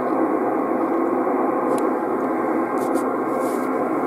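Yaesu FT-450D transceiver receiving in upper sideband on the 11 m band with no station transmitting: a steady hiss of band noise from its speaker, thin and narrow because only the voice range passes its sideband filter.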